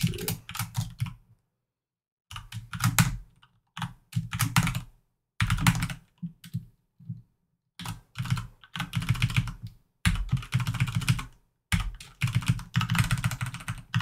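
Typing on a computer keyboard in quick bursts of keystrokes, with short pauses between the bursts.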